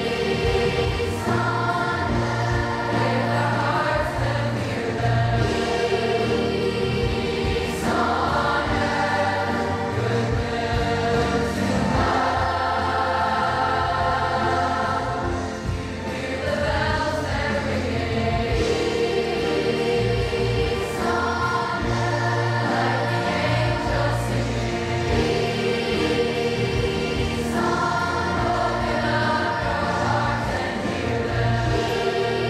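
A large children's choir singing in many voices, in long held phrases that change every few seconds over steady low notes.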